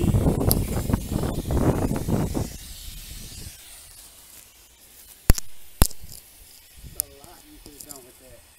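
Water jetting from a garden hose spray nozzle onto bare soil, a loud rushing splash that stops about two and a half seconds in. Later come two sharp knocks half a second apart.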